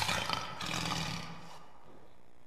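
A lion's roar sound effect, dying away about a second and a half in.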